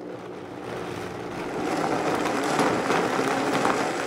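High-speed blender running, pureeing soaked dried chilies into a smooth paste; it starts at the opening and grows louder over the first two seconds or so, then holds steady.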